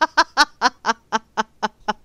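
A person laughing hard: a run of about nine rhythmic "ha" bursts, slowing slightly and dropping in pitch, which stop just before two seconds in.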